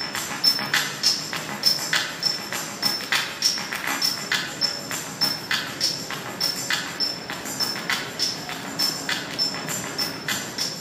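Rhythmic percussion music: short jingling strikes in a steady pulse, about two to three a second.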